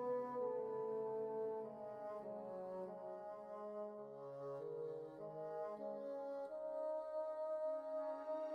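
Slow background music of sustained brass-like chords, the notes held and changing about once a second.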